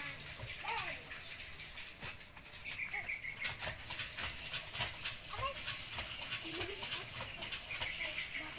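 Hand-lever water pump being worked: quick, irregular clicks and knocks from the handle and plunger, over a hiss of water.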